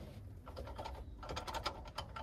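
Quick runs of small metallic clicks from a hand tool being worked onto the hex fill plug of a VW Beetle's transmission. The clicks come from about half a second in until near the end.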